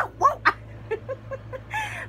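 A woman laughing in short, high-pitched bursts: three sharp ones in the first half second, then softer ones, and a brief squeal near the end.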